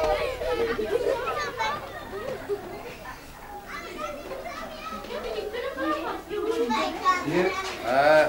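Children's voices: several children chattering and calling out at once, overlapping with one another.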